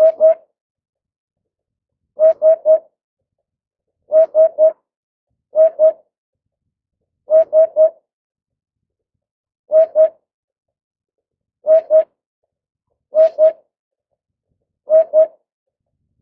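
Eurasian hoopoe singing its low hollow 'hoop-hoop' song: nine quick groups of two or three hoots, repeated every couple of seconds.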